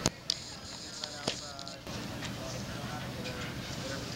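Indistinct background voices over steady outdoor noise, with a few sharp knocks in the first second and a half, the loudest right at the start.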